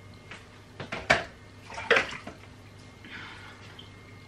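Utensils being handled off to the side: a handful of sharp knocks and clatters in quick succession, the loudest just after a second in, then a brief soft rush near the end.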